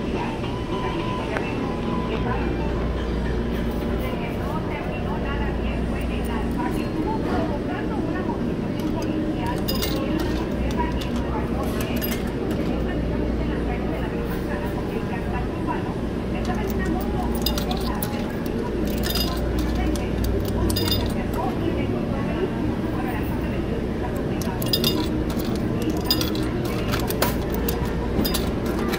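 Laundromat background: a steady low machine hum under indistinct voices, with scattered metallic clinks that come more often in the second half.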